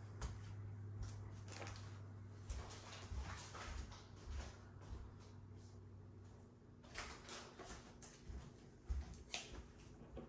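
Faint handling sounds: scattered soft rustles and small knocks, a few louder ones near the end, over a low hum that stops about six and a half seconds in.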